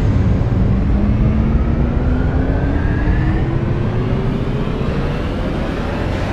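Cinematic riser sound effect: a loud, rumbling noise with a tone that climbs slowly and steadily in pitch throughout.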